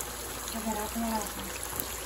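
Pieces of meat shallow-frying in hot oil in a pan, sizzling steadily.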